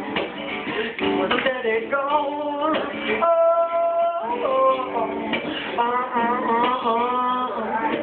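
Live solo performance: a man singing over his own acoustic guitar, with one note held steady for about a second a little after three seconds in.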